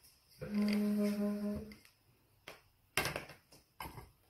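A steady low hum held on one pitch for about a second and a half, then two short sharp noisy bursts near the end.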